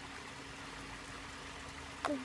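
Steady trickling of running water in a koi pond, with a faint steady hum underneath.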